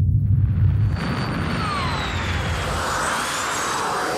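Cinematic sci-fi spaceship sound effect: a deep rumble that gives way, about a second in, to a swelling hissing whoosh with faint gliding whistles.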